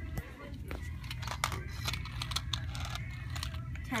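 Small wind-up toy rat running across a hard tile floor, giving a string of sharp, irregular clicks and rattles from its clockwork and wheels, over a low steady hum.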